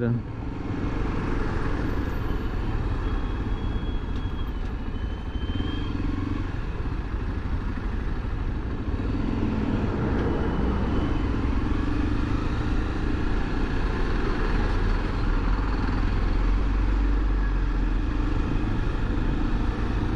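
Honda XRE300's single-cylinder engine running at low speed as the bike crawls through dense traffic, with the engines and tyres of trucks and cars close alongside. A deep rumble swells in the second half.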